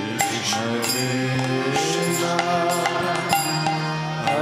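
Kirtan: a male voice leading a devotional chant, accompanied by harmonium, acoustic guitar and a two-headed drum, with steady, regular percussion strikes.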